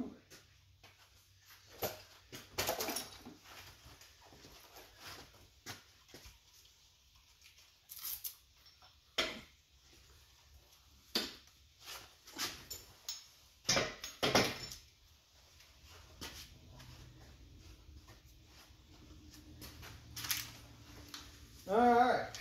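Scattered metal clinks and knocks of engine parts and hand tools being handled during an engine teardown, with a few louder clanks in the middle and near the end.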